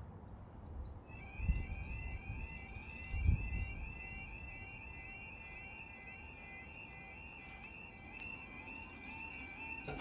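A level crossing's electronic yodel alarm starts about a second in and sounds a rapidly repeating warbling tone, warning that the barriers are about to lower for an approaching train. Two low thumps come at about one and a half and three seconds in, the second the loudest.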